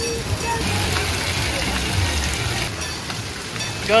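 Splash-pad water jets spraying and pattering onto the rubber play surface, a steady hiss with a low rumble underneath and children's voices in the background.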